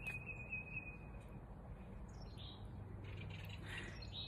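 Faint outdoor birdsong: a thin, high whistled note lasting about a second at the start, then a couple of softer calls, over a low steady background rumble.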